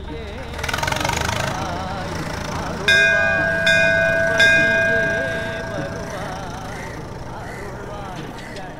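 A metal temple bell struck three times, about three-quarters of a second apart. Each strike leaves a clear ringing of several steady tones that fades over a couple of seconds. Before the strikes, a low vehicle rumble swells and dies away.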